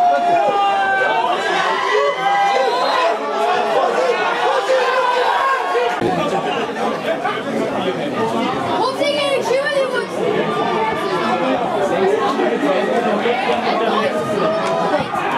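Indistinct chatter of many voices talking over one another, from spectators at a football match, with no single clear speaker. The background changes abruptly about six seconds in.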